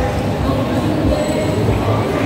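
Loud amplified music from a street performance's PA speakers, heavy in the bass, with a steady beat and some held notes.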